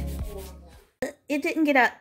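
Scrubbing in a stainless-steel sink under background music that fades out over the first second, then a woman starts speaking.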